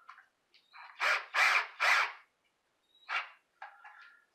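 Cordless drill driving a Robertson screw into a wooden upright in short bursts: three quick pulses about a second in, then one more near the end.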